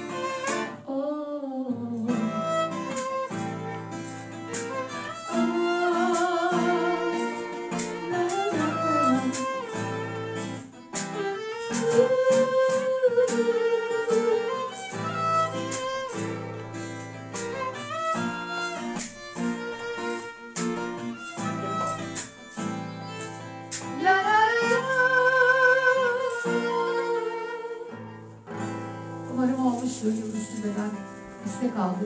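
Acoustic guitar and violin playing together, the violin carrying long held notes with vibrato, with a woman's singing voice at times.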